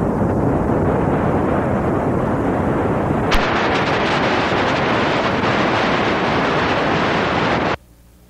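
Loud, steady static noise, as from a detuned analog TV. After a click about three seconds in it turns hissier, and it cuts off abruptly near the end.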